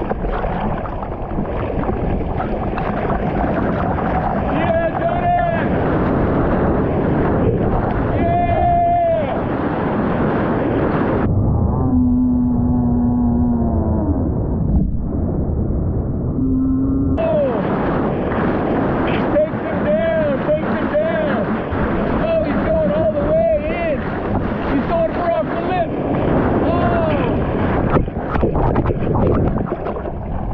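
Breaking surf and whitewater rushing over a board-mounted action camera as a bodyboarder rides a wave. The sound goes muffled for about six seconds in the middle.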